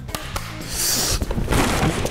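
A person crashing through a drywall panel, the gypsum board cracking and tearing, with louder crashing noise in the second half, over background music.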